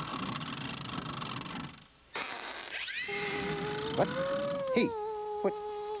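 Cartoon buzzing-fly sound effect: a steady, droning hum that starts about halfway through and wavers gently up and down in pitch. Before it comes a stretch of even hissy noise.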